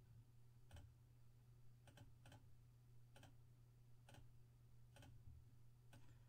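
About six faint computer mouse clicks, roughly one a second, over a steady low hum: the list being randomized again and again.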